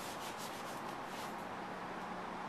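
Marker writing on a whiteboard: a quick series of short scratchy strokes in the first second or so, then stopping.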